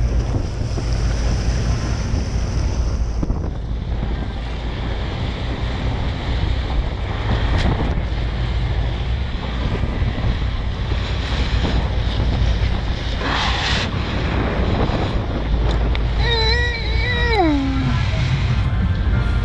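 Wind buffeting the microphone over churning sea water alongside a boat as a hooked tuna thrashes at the surface, with a steady low rumble underneath. There is a louder splashing burst about two-thirds of the way in. Near the end comes a held pitched note that slides down.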